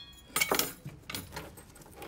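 Bicycle chain and its bent-wire dipping tool jingling and clinking as they are picked up. There is a cluster of metallic clinks about half a second in and a few lighter ones a second later.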